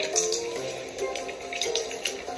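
Soft background music with several short crackling rustles of wrapping paper and sticky tape being handled while a gift is wrapped.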